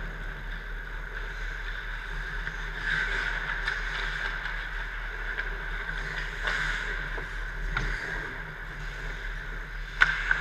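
Ice rink during hockey play: skate blades scraping and gliding on the ice, with a few sharp clacks, over a steady low hum.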